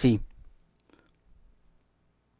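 A voice finishing a spoken word, then near silence with a faint low hum and a faint short click about a second in.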